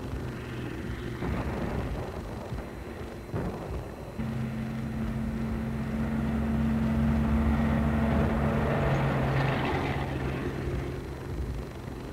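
Tank engine running with a steady low hum that comes in louder about four seconds in and fades near the end.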